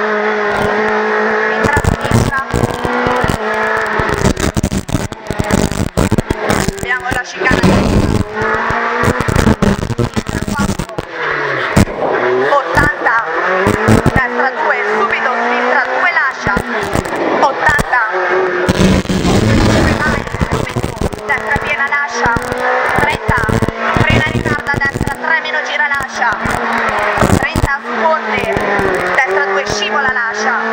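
Renault Clio Williams rally car's 2.0-litre four-cylinder engine heard from inside the cabin at full stage pace. It revs up through the gears in rising sweeps and drops off sharply several times as the driver lifts and brakes for corners.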